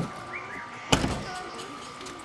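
A car door shutting with one solid thud about a second in.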